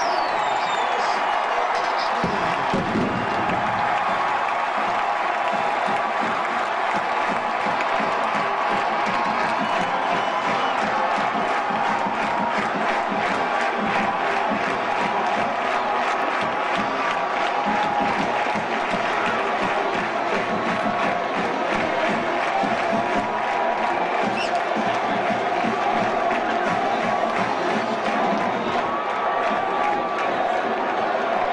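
Large stadium crowd cheering steadily after a home-team touchdown.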